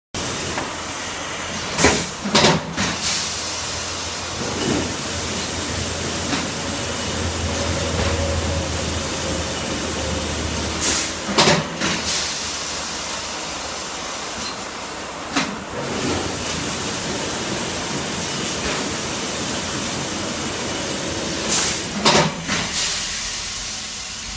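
Automatic packaging machine running: a steady mechanical hiss with short, sharp bursts, mostly in close pairs, about every nine to ten seconds.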